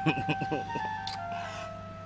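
Background film music: a slow melody of long held notes that step to new pitches a few times, under a man's short murmured 'mm-hmm' at the start.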